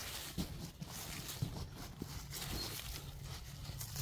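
Gloved hand digging and rustling through loose potting soil and dry leaves in a grow bag, with irregular small crunches and knocks.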